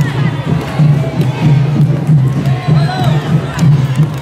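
Candombe drums (tambores) playing a steady, driving beat, with crowd voices shouting and cheering over it.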